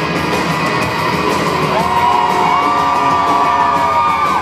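Live pop-rock band playing in a concert hall, with electric guitar and drums. A little under two seconds in, several voices rise into long held notes.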